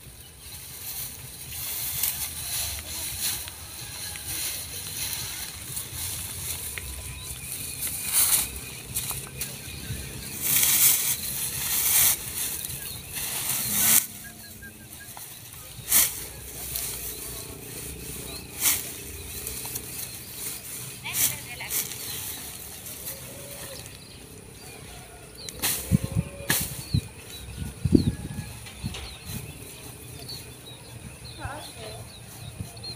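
Bundles of cut grass rustling and crackling as they are handled, pressed together and tied with plastic rope, in irregular bursts.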